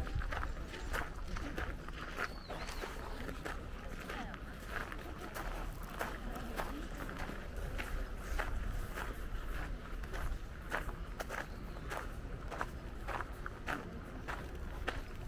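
Footsteps crunching on a gravel path at a steady walking pace, about two steps a second.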